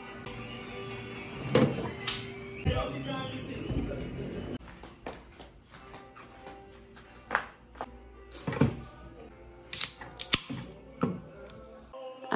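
Background music with handling clicks and knocks: a refrigerator door opened, then an aluminium energy-drink can taken out and handled. About ten seconds in, two sharp cracks come close together, which fit the can's pull tab being snapped open.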